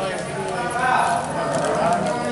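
Voices talking at a doorway, with a few light clicks mixed in.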